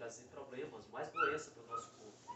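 A baby's short high-pitched squeals, a rising-and-falling cry about a second in and a brief one near the end, over low murmured speech.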